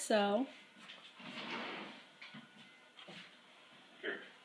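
A butter knife spreading frosting over a cupcake: a soft scraping hiss lasting about a second, then a couple of faint clicks.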